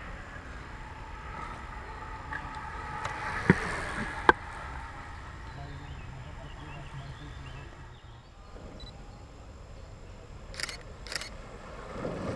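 Outdoor background noise with faint distant voices, broken by two sharp loud clicks about three and a half and four seconds in and two short crisp clicks near the end.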